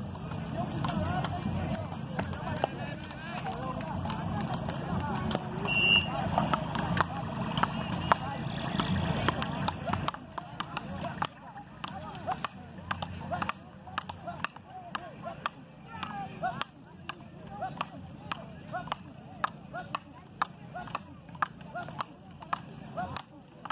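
Frescobol paddles hitting the ball in a fast rally: sharp clacks at an even rhythm, about three every two seconds. Voices chatter in the background through roughly the first half.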